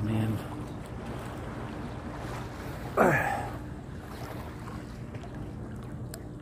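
Sea water lapping around a swimmer and wind buffeting the microphone over a steady low drone, with one short vocal cry about three seconds in whose pitch falls steeply.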